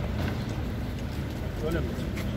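Steady low rumble of outdoor street background noise, with a brief spoken remark near the end.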